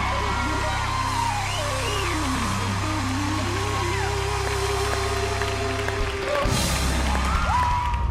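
Live rock band playing the close of a power ballad, drums and bass under a long high note that slides down in pitch over about two seconds, then settles into a lower held note; a note rises back up near the end.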